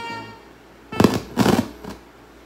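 The last held chord of the music fades out in the first half second. From about a second in come three loud, noisy thumps in quick succession.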